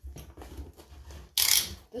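Cardboard mailer box handled on a countertop: light rubbing and handling, then one short, loud, hissy rasp about a second and a half in as the box is moved.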